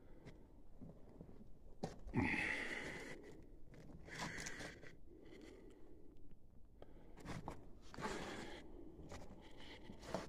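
Footsteps crunching and scuffing over loose rock and debris on a mine floor, in uneven steps, the loudest about two seconds in.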